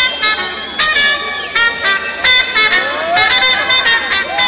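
Trumpets playing a series of short, loud, punchy blasts in a rhythmic pattern with a live Latin band.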